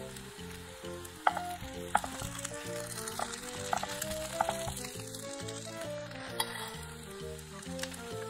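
Chopped onions sizzling in hot oil in a frying pan while a silicone spatula stirs them, with a handful of sharp clicks along the way. Soft background music plays underneath.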